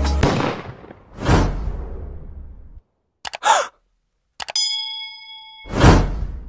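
Logo sound effects. A whoosh that fades out is followed by clicks and a short swish. Then a bell-like ding rings for about a second, and a loud whoosh builds near the end.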